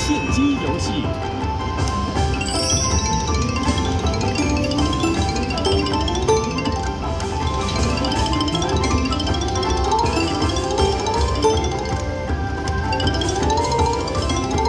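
Mighty Cash slot machine playing its bonus-feature music during the free-spin round: chiming bell-like notes in quick rising runs, repeating about once a second, over a steady low rumble.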